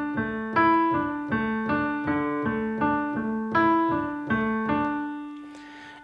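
Piano playing a D sus 2 arpeggio (D, A, D, A, E, D, A, D) twice over, one note at a time, about three notes a second. The last note rings on and fades away near the end.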